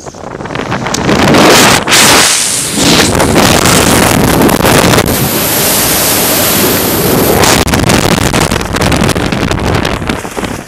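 Rushing wind blasting the body-mounted camera's microphone of a skydiver in freefall, loud and unbroken. It swells over the first second or so as the fall speeds up.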